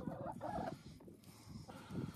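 Chickens clucking softly, a few short calls in the first half second, then quieter.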